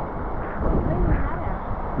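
Voices talking over a loud, steady low rumble of wind buffeting the microphone mixed with the rush of fast river water.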